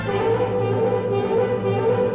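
Symphony orchestra playing, with a chord held for about two seconds and brass to the fore.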